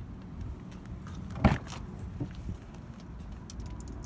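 A 2000 Toyota 4Runner's rear door being opened by its outside handle: one sharp clunk about a second and a half in as the latch releases, then a few lighter clicks as the door swings open.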